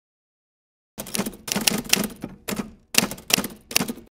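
Typewriter sound effect: rapid key clacks in about five short bunches, starting about a second in.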